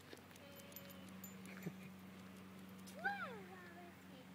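A steady low hum, with one short call about three seconds in that rises and then slides down in pitch.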